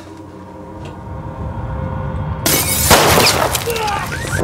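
A tense, swelling music drone, then about two and a half seconds in a sudden loud blast with crashing and shattering debris.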